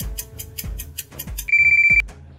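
Quiz countdown music: fast clock-like ticking over a low beat. About a second and a half in, a loud, steady electronic beep cuts in for half a second, signalling that the answer time is up.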